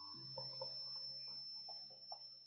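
Faint stylus taps and scratches on a tablet screen while handwriting, a short stroke every few tenths of a second, over a steady electrical hum and a thin high whine.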